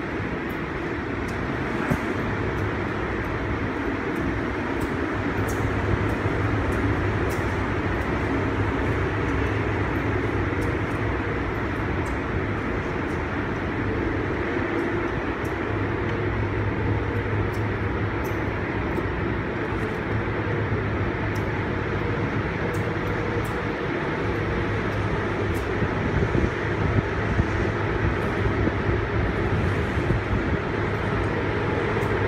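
Steady rumbling noise of wind and a moving ship on a phone microphone, with a constant low hum underneath.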